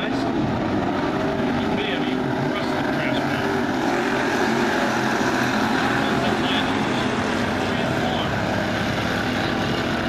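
Engines of a field of street stock race cars running at speed around a dirt oval, several engines blending into one steady drone that swells a little midway.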